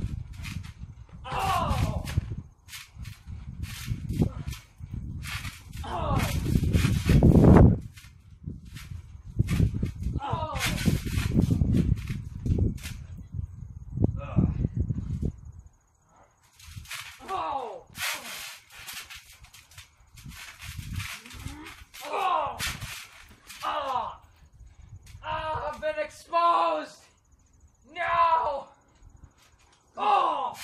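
A trampoline mat and frame thudding under two people wrestling on it, heaviest in the first half and loudest about seven seconds in. Short calls that drop sharply in pitch repeat every second or two throughout.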